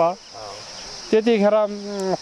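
Steady high-pitched insect chirring running behind a woman's voice; she pauses briefly, then speaks again about a second in with a drawn-out vowel.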